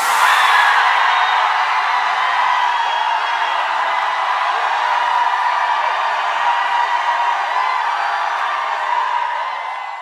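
Concert audience cheering: many high voices together in a steady wash with no music, fading out near the end.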